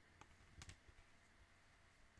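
Near silence: room tone with a few faint clicks in the first second, from something being handled near the microphone.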